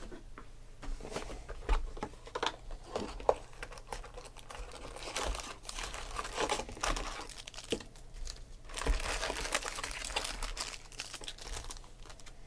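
Foil trading-card packs crinkling and rustling as hands pick up and shuffle them, with irregular crisp crackles that grow busiest about three quarters of the way through.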